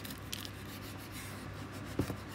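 Kitchen knife cutting through a firm baked slab on a wooden cutting board: a few short rasping scrapes of the blade, then a knock of the blade on the board at the end.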